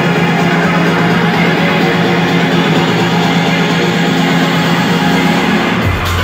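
Loud electronic dance music from a DJ set, played live over a festival sound system, in a breakdown: a steady held low note with no deep kick. Right at the end the deep bass comes back in.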